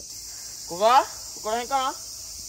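A steady, high-pitched chorus of summer insects. A person calls out in a rising voice about a second in, followed by a few shorter voiced sounds.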